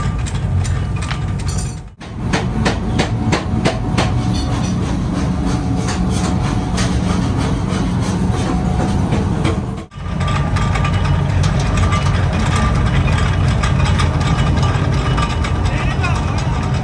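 Flywheel-driven mechanical power press running with a steady low drone as it shears steel bar stock into short pieces, with a run of sharp metal clanks and clicks a couple of seconds in. The sound briefly drops out twice.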